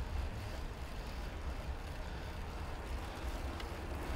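Steady low rumble of street traffic and wind rushing past a camera moving at bicycle speed among cars.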